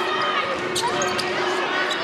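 Basketball being dribbled on a hardwood arena court, several bounces over the steady murmur of an arena crowd.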